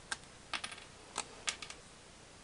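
Round cardboard shield tokens being pressed out of a die-cut punchboard, giving a scatter of small, sharp clicks as each tab tears free, about seven in all, some in quick runs.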